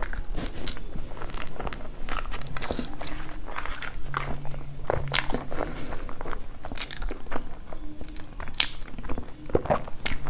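Close-miked chewing of a soft cream-filled pastry: wet mouth clicks and smacks, irregular and one after another.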